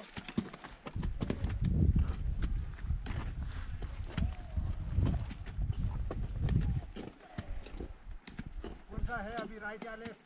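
Sharp knocks and clicks of ice axes and crampon front-points striking an ice wall, with a heavy low rumble of wind on the microphone from about a second in until about seven seconds. A voice calls out briefly near the end.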